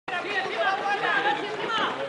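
Several voices talking and calling out at once, overlapping chatter from people near the camera or on the pitch.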